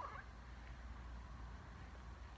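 Quiet room tone: a faint steady hiss with a low hum and no distinct event.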